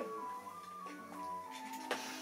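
Quiet background music: a slow melody of held notes.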